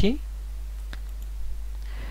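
A single sharp computer mouse click about a second in, followed by a few faint ticks, over a steady low electrical hum.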